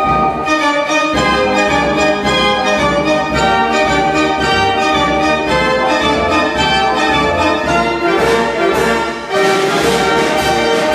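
Verbeeck concert organ, a large mechanical pipe organ, playing a tune with many voices over a steady beat. The sound grows fuller and brighter near the end.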